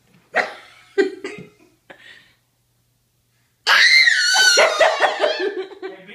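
A toddler's short, sharp vocal noises, then, after a pause, a loud high-pitched laugh that breaks into quick pulses during the second half.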